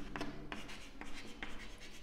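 Chalk writing on a chalkboard: a quiet run of short scratches and taps as letters are written.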